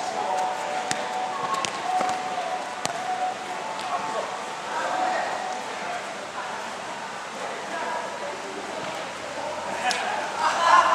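Indistinct voices of players calling to each other across a small-sided football pitch, with a few sharp knocks of the ball being kicked.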